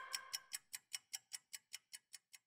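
Clock-like ticking from a news intro jingle, about five ticks a second, growing fainter, while the jingle's last held chord dies away in the first half second.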